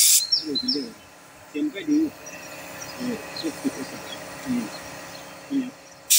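Compressed-air gravity-feed spray paint gun hissing in a loud burst that cuts off just after the start. After it, quiet voices talk in the background.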